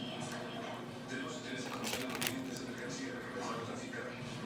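Television dialogue playing faintly in the background, with a couple of short clicks about two seconds in.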